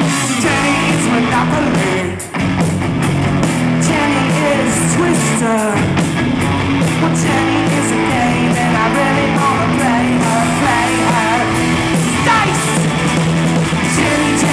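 Live rock band playing a song with distorted electric guitars, bass and drums, and a singer shouting the vocal over them through the PA. The music drops out for a moment about two seconds in, then carries on.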